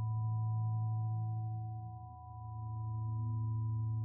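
A sustained drone of steady pure tones, a strong low hum with several fainter higher tones above it, swelling and fading in a slow pulse about every three seconds. It is a brainwave-frequency meditation tone.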